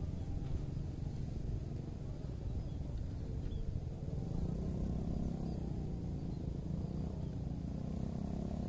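A quiet, steady low rumble with no distinct events.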